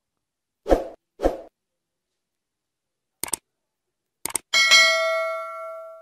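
Subscribe-reminder sound effect: two soft thumps, then a couple of sharp clicks, then a bright bell ding about four and a half seconds in that rings on with several pitches and slowly fades.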